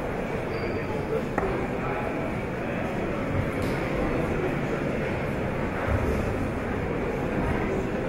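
Steady murmur of a large crowd of spectators talking indistinctly in a big sports hall, with one short click about a second and a half in.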